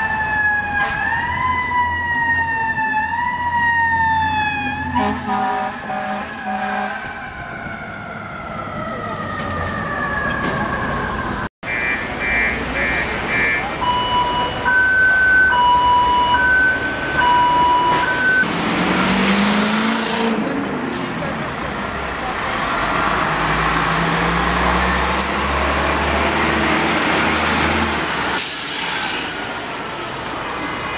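Emergency vehicle siren rising in repeated stepped sweeps, then winding down in one long falling wail. After a break come a few short steady electronic beeps, then heavy emergency-vehicle engine and street noise, with the engine pitch rising as it passes.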